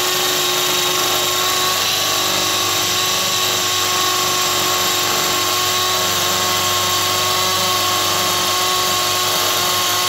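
Milwaukee M12 Fuel 2504 hammer drill boring a half-inch hole into a concrete block at speed two, running steadily under load with a constant whine.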